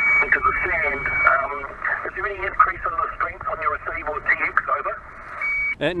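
A distant man's voice received on HF single sideband from New Zealand through the transceiver's speaker: thin and narrow-banded, with the multipath echo noted on this station's signal. A faint steady whistle sits under the voice early on, and a short tone follows just before the end.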